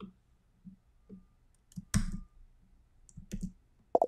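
Computer keyboard keys and mouse buttons clicking in short separate clicks during text editing, a handful over the few seconds, the loudest about two seconds in.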